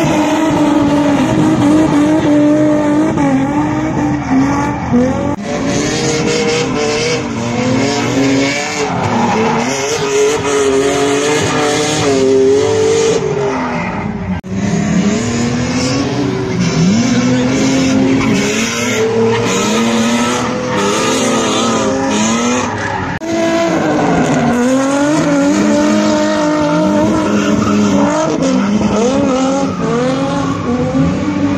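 Drift cars sliding sideways: engines held at high revs, the pitch repeatedly rising and dipping with throttle, over the sound of sliding, smoking tyres. The sound breaks off abruptly three times as a different car takes over.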